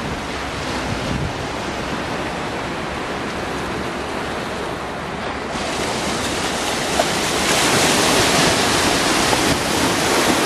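Small sea waves breaking and washing onto a sandy beach, a steady rushing that grows louder about halfway through.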